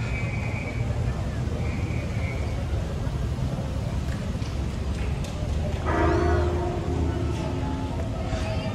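Slow-moving street traffic: a steady low rumble of car engines idling and creeping forward, with voices in the background. About six seconds in, a held pitched tone comes in over it.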